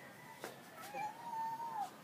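A young child's single high, drawn-out vocal call, lasting about a second, that rises slightly and falls away at the end. A brief click comes just before it.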